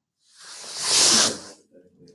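A hiss that swells and fades over about a second and a half.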